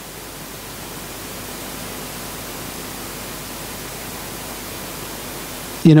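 Steady hiss, slowly growing a little louder, with a faint steady hum beneath it; a man's voice begins right at the end.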